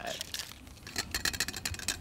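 Metal cocktail shaker with ice being handled after shaking: a run of small clicks and knocks from about a second in.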